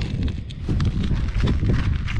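Wind buffeting the microphone in a steady low rumble, with a few irregular light knocks and scuffs.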